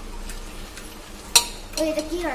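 A long metal spoon stirring a thick rice and vegetable mixture in an aluminium pressure cooker over a low sizzle. There are light scrapes, and one sharp clank of the spoon against the pot about a second and a half in.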